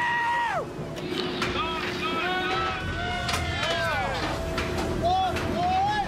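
Crew members shouting and hollering excitedly as a full crab pot comes aboard: one long held call that drops away about half a second in, then several overlapping yells, over a steady machine drone.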